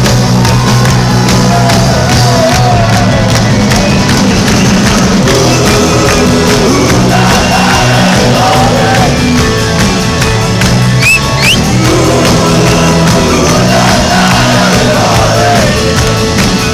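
Rock band playing live with electric guitars, bass, drums and a lead singer, with the audience shouting and singing along, recorded loud from within the crowd.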